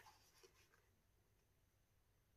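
Near silence, with a faint soft rustle of a paper towel being handled on a wet painted canvas within the first second.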